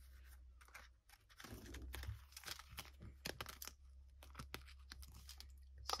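Faint rustling and crackling of paper banknotes and plastic cash-envelope pages being handled and flipped through in a small binder, with many light, irregular clicks.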